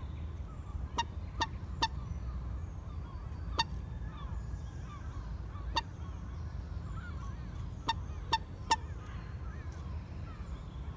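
Common moorhen giving short, sharp calls, about eight in all, the first three and the last three in quick runs. A steady low rumble runs underneath, with faint small chirps between the calls.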